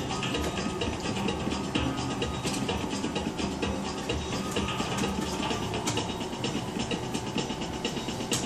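Bally Wulff Action Star 777 slot machine's game music running on through a string of free spins, mixed with a dense clicking from the spinning reels and a few sharper clicks.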